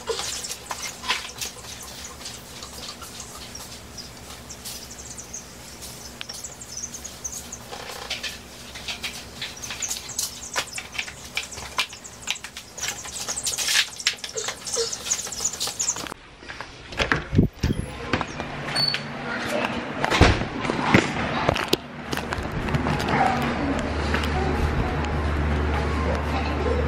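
Baby chicks peeping in a brooder bin, with scattered clicks and knocks as the feeder and waterer are handled in wood shavings. About 16 seconds in the sound changes suddenly to louder knocks and clatter, then a steady low hum.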